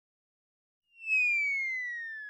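Silence for about the first second, then a single clear whistle-like tone comes in loudly and glides slowly down in pitch while fading: an added end-card sound effect.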